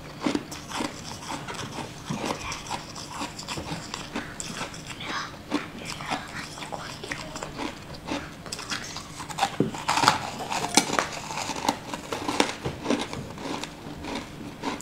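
Close-miked biting and chewing of a crunchy, crumbly food: a dense run of small crackling crunches, busiest and loudest about ten seconds in.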